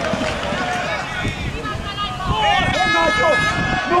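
Players and spectators shouting at a football match as an attack builds. Near the end the shouts turn into long, held calls as a shot goes in for a goal.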